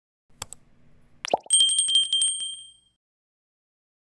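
Subscribe-button animation sound effect: a mouse click, a quick falling blip about a second in, then a bright notification-bell ding that rings with a fast flutter for about a second and fades out.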